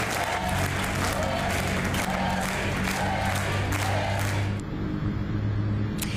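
An audience applauding over music with a steady low bass tone; the applause stops suddenly about four and a half seconds in, leaving the music.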